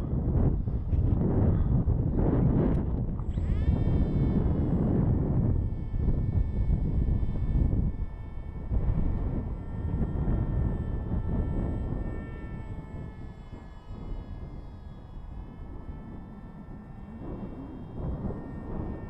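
Electric motor and pusher propeller of a Wing Wing Z-84 RC flying wing, its whine sweeping sharply up in pitch about three and a half seconds in as it throttles up after the hand launch, then holding a steady pitch and fading as the plane flies away. Heavy wind rumble on the microphone through the first half.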